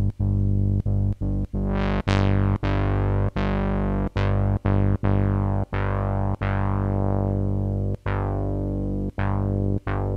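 KingKORG synthesizer bass patch, detuned sawtooth oscillators through a Moog-style low-pass filter, playing the same low note over and over, about fifteen times. Each note opens with a bright filter sweep that falls away; the sweep is brighter on some notes than on others as the filter envelope is being adjusted.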